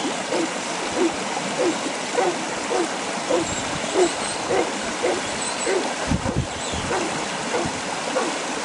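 Huntaway sheepdog barking steadily and rhythmically, a little over two barks a second, as it drives sheep up a hill in a straight hunt. Wind noise on the microphone runs underneath, with a low gusty rumble about six seconds in.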